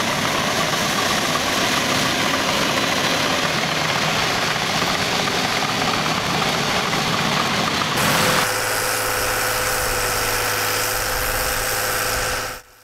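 Crawler bulldozer's diesel engine working steadily, with dense track and dirt noise. About eight seconds in, the sound cuts to a steadier engine drone with a held whine.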